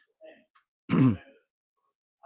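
A man briefly clears his throat once, about a second in.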